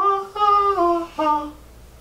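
A voice humming a short sung phrase: one long held note that steps down in pitch, then a brief note, before it trails off.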